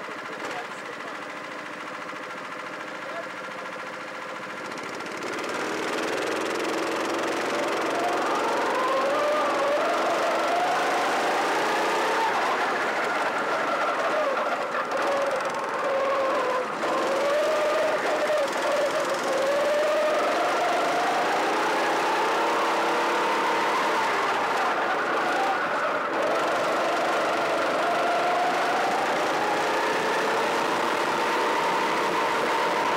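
Honda Pro-kart's four-stroke engine idling on the grid, then pulling away about five seconds in and running on the track, its pitch rising and falling with the throttle through the corners.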